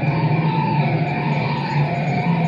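Live electronic sound played through a guitar amplifier: a steady low hum with higher tones above it that slide up and down a little.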